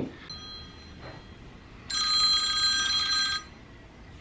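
Mobile phone ringtone signalling an incoming call: a faint chime just after the start, then a louder ring of about a second and a half near the middle.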